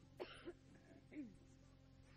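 Very quiet steady hum of an old recording, with two short, soft vocal sounds from a person, each falling in pitch, about a quarter second and a second in.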